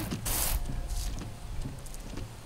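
Bosch Icon beam-style wiper blade sweeping across a wet windshield with the wiper mechanism running. A short hiss comes about a quarter second in, followed by a faint, thin squeak.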